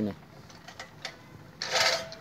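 Manual push reel lawn mower: a few faint ticks, then about one and a half seconds in a short burst of whirring as the reel blades spin and cut grass.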